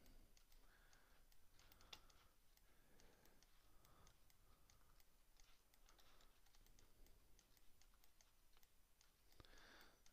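Near silence with faint, scattered clicks and taps of a computer mouse and keyboard.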